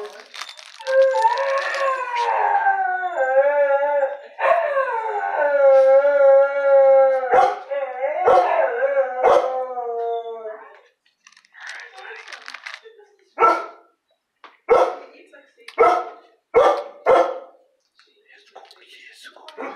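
A dog howling in one long, wavering note of about nine seconds, followed by about five short barks.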